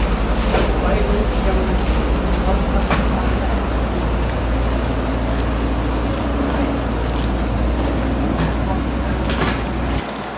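A steady low rumble with a fast, regular pulse, like an engine running, with a few short clicks over it.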